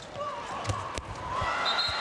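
A handball bouncing on a hard indoor court during play: a few sharp thuds spaced unevenly over about a second, over the steady background noise of the arena.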